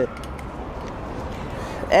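Steady outdoor city background noise with no clear event, and a man's voice starting at the very end.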